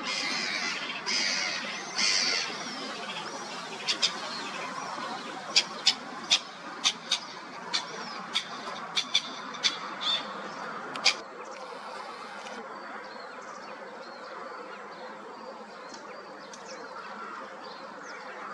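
Waterbirds calling on a lake: a few loud calls in the first three seconds, then a dozen or so sharp clicks between about four and eleven seconds in, then faint calls over a steady outdoor hiss.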